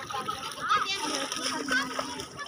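Bathers chattering and calling out, children's voices among them, with water splashing around people wading in shallow sea. A steady low hum comes in about halfway through.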